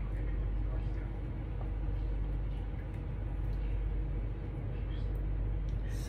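Warm liquid gelatin being poured from a plastic measuring cup over fruit and cream cheese in glass dishes, a soft continuous trickle. A steady low background hum runs underneath and is the loudest part.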